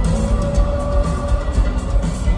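Live rock band playing loudly in an arena: electric guitars, bass and drums, with a held note ringing over a steady drum beat and cymbals.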